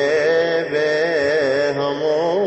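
Coptic liturgical chant: a slow, melismatic hymn line sung in long held notes that waver and turn ornamentally.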